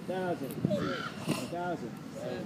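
Crows cawing: a run of short, harsh caws that rise and fall in pitch, about two a second.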